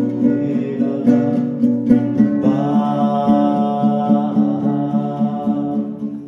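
Devotional kirtan music led by a strummed acoustic guitar, with a long held chord about halfway through.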